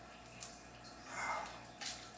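Quiet room with small handling sounds: a faint click, then near the end a brief crinkle as a small plastic packet of sticky fly tape is pulled open.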